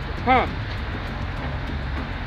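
Steady low rumble of street traffic, with one short vocal sound from a man's voice about a third of a second in.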